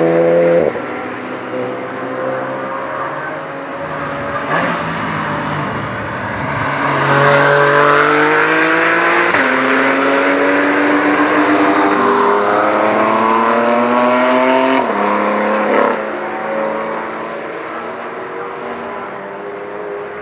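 Racing cars accelerating out of a corner one after another, among them a BMW M2, engines revving up and dropping in pitch at each upshift. Several engines overlap, loudest in the middle as one car passes close.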